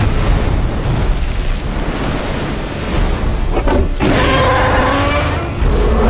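Film sound design of a ship capsizing in heavy sea: deep rumbling booms and crashing water. About four seconds in, a sustained pitched sound with several held notes rises over the rumble.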